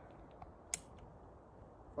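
Quiet outdoor background with a single sharp click about three-quarters of a second in, and a couple of faint ticks just before it.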